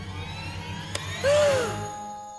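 Cartoon sound effects for a spooky moment: a shimmering rising sweep over a low rumble, with a single voiced cry that rises and falls about a second and a quarter in.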